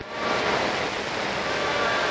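Radio receiver static on the 11-metre CB band between transmissions: a steady hiss with a few faint steady tones in it.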